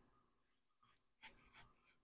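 Near silence, with a few faint short scrapes of a kitchen knife cutting through watermelon flesh, about a second in.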